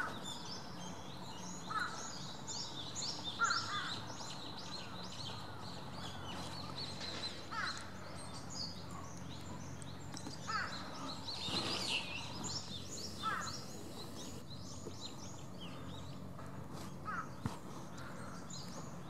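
Birds in the trees: a dense, continuous twitter of short high chirps, with a louder, lower call breaking in about seven times, over a steady low background hum.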